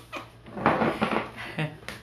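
A man's breathy, wheezing laughter: one long hissing exhale followed by a few short gasps.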